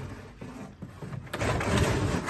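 Cardboard packaging insert rubbing and scraping against the inside of a plastic grow-box cabinet as it is handled and pulled at, louder in the second half.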